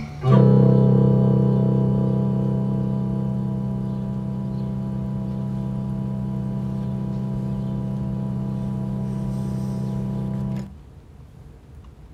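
A single guitar chord struck once and left to ring for about ten seconds, fading a little at first and then holding, before it cuts off suddenly.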